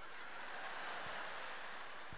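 Low, steady background noise of a theatre audience with no distinct laughter, applause or speech.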